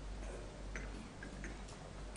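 A few faint, irregular small clicks over a low, steady hum.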